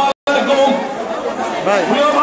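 Several people talking over one another, with a brief total cut-out of the sound just after the start.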